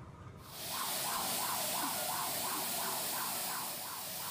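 A siren rising and falling quickly, about three sweeps a second, over a loud steady hiss that starts suddenly about half a second in.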